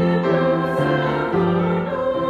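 Upright piano playing a slow hymn in held chords that change about every half second.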